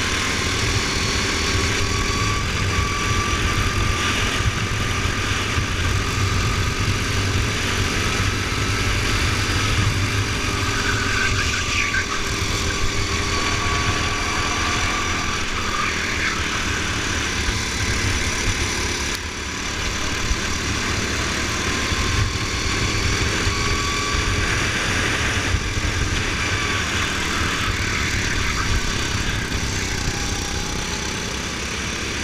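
Single-cylinder go-kart engine heard from onboard the kart, its pitch rising and falling with the throttle through the corners over a steady low rumble. The level drops briefly about two-thirds of the way through.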